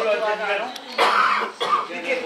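A person coughs about a second in, a short rough cough with throat clearing, after a brief bit of talk.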